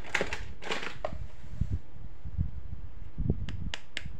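Hands handling plastic toys: two short crinkling rustles at the start, soft bumps against the cloth-covered surface, then three quick sharp clicks near the end as the toy smartwatch is picked up.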